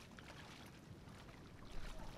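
Faint splashing and sloshing of feet wading through shallow water, with a brief louder low bump near the end.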